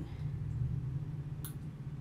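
A single short click about one and a half seconds in as the exposure lamp of a screen-printing light kit is plugged in and comes on, over a steady low hum.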